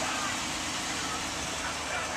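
Steady outdoor background noise on a car lot: an even hiss over a low vehicle rumble.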